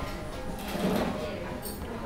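Restaurant background: music playing under people talking, with a brief louder sound about a second in.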